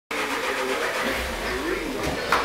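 Pallet stacker lowering a loaded pallet of sacks: a steady mechanical hum over a hiss.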